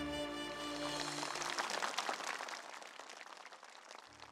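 Sustained background music ends about a second in and gives way to theatre audience applause, which fades away toward the end.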